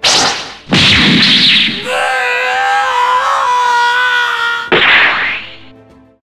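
Cartoon slapstick sound effects: a loud whack at the start and another just under a second in, then a held, wavering pitched tone for about three seconds, and a last burst near the end that fades away.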